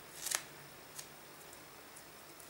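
Scissors snipping through a strip of paper tape: one short cut about a quarter second in, then a faint click about a second in.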